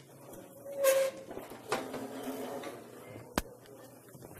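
Chairs scraping and shuffling on the floor as people settle into seats: a loud squeaky scrape about a second in, a second scrape soon after, and a sharp click near the end.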